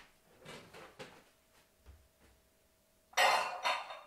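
A few soft clicks in near quiet, then about three seconds in a kitchen faucet suddenly runs loudly for almost a second as a utensil is rinsed under it.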